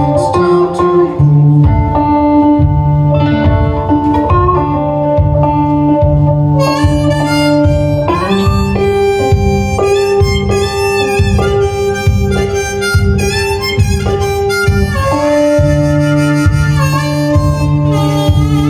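Blues harmonica in a neck rack played over a fingerpicked resonator guitar with a steady alternating bass. The harmonica grows strong and bright about six and a half seconds in.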